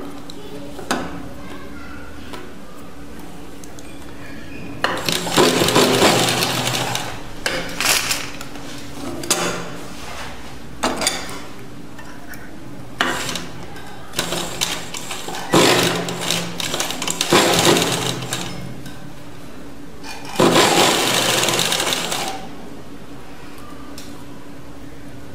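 Sewing machine stitching a side seam in several runs of one to three seconds, with short pauses between them while the fabric is repositioned. The longest runs come in the middle and near the end. A steady low hum continues underneath.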